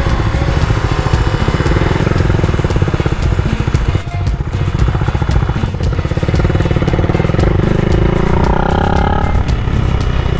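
Motorcycle engine running at low speed, with a brief drop in level about four seconds in, then pulling a little higher in the last few seconds as the throttle opens.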